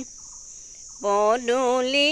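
A steady, high chirring of insects with a woman's unaccompanied singing of an Assamese wedding song (biya naam); the voice pauses for the first second, leaving the insects alone, then comes back in.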